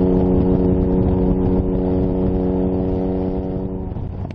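Sports car's engine and exhaust running at steady revs: a droning note that holds one pitch, easing off and dropping away near the end.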